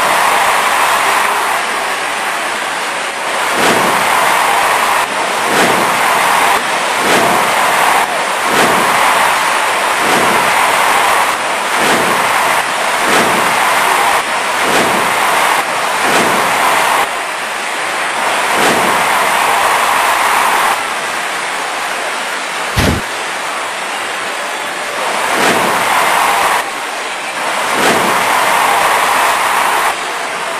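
Wrestling match audio: a steady, loud hiss of noise with a thud about every second, as bodies hit the ring mat, and one sharp, loud crack about 23 seconds in.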